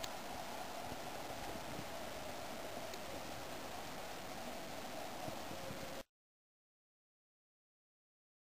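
Steady outdoor background hiss with no distinct events, which cuts off to silence about six seconds in.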